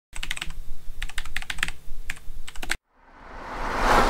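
Rapid clicking in short irregular bursts, like typing on a keyboard, that stops abruptly about two-thirds of the way through. After a moment of silence, a swell of hiss rises steadily in loudness near the end.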